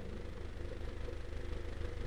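Faint steady low hum with a slight, fast flutter in loudness.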